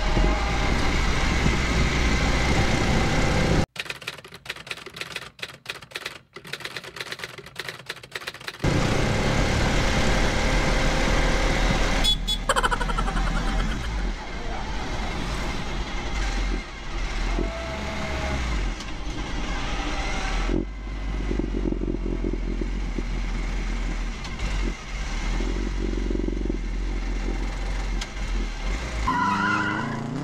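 Small vehicle's engine running and road noise, heard from inside the cab while driving. The sound drops away for about five seconds near the start, and the engine note rises near the end.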